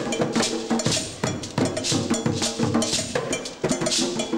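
Percussion music: a metal bell struck in a fast, steady repeating pattern over drums, with recurring shaker swishes.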